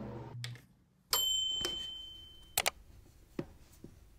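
A short music clip ends, and about a second in a sudden bright ringing tone starts and fades away over about a second and a half, followed by a few sharp clicks.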